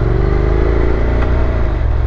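Honda NC700X's 670 cc parallel-twin engine running through an Akrapovic exhaust, heard from the rider's seat at low road speed. It holds a steady note with a slight rise, and the note changes shortly before the end.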